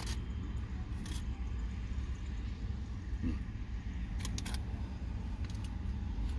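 Steady low rumble inside a car's cabin, with a few short clicks and rustles from a foil-wrapped cheeseburger being handled and bitten into.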